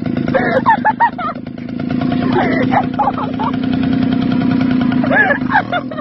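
Small moped engine running steadily with a constant hum. People's voices call out over it three times.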